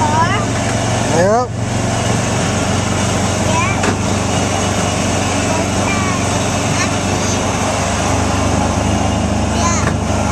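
Small gasoline engine of a Disneyland Autopia car running steadily under way, heard from the driver's seat. A child's high voice rises in short squeals over it, most strongly in the first second and a half.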